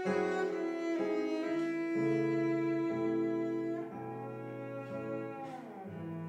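Cello bowing long sustained melody notes over an acoustic guitar accompaniment, a new note about every second. Near the end the pitch slides down into a lower note.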